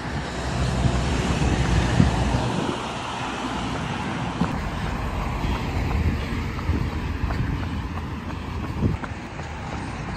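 Wind rushing over a phone microphone while running beside a road, with traffic noise and faint regular footfalls. The wind rumble is heaviest in the first couple of seconds.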